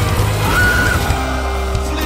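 Live rock band playing: electric guitar, bass, drums and synth, with a heavy bass underneath. A short tone slides up and holds briefly in the first second, and the texture thins a little after that.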